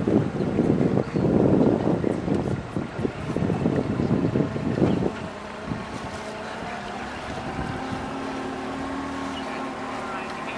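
Wind gusting on the microphone for about the first five seconds, over the steady drone of a river raft's outboard motor under way. After that the motor is heard more plainly as a steady hum, with a steady tone coming up near the end.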